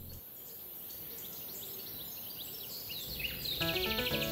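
Birds chirping in short calls over a steady, high insect hiss, with music coming in near the end.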